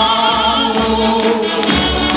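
A marchas populares song: a choir of voices singing together over musical accompaniment, with a wavering held note in the first half.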